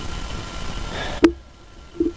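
Small brushed DC motor, rated 5 V and 22,000 RPM, spinning freely with no load on a battery pack: a steady high-speed whir. A sharp click comes just past a second in, and the running sound stops with it.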